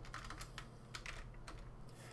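Faint typing on a computer keyboard: a scattered run of separate keystrokes.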